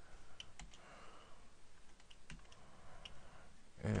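Computer keyboard keys clicking as a few characters are typed, about half a dozen separate keystrokes spread unevenly over the few seconds.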